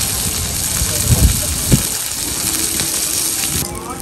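Pork and fat sizzling and spattering on a very hot moo kratha grill pan: a steady crackling hiss with a couple of low knocks, which thins out suddenly near the end.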